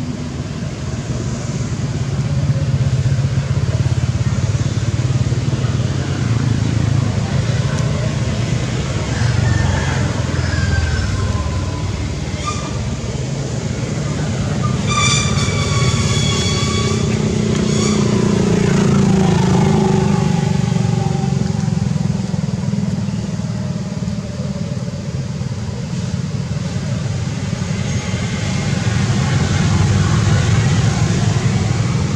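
Steady rumble of motor traffic running nearby, with one engine, motorbike-like, rising and falling in pitch as it swells and passes a little past the middle. A high-pitched tone sounds for about two seconds just before that.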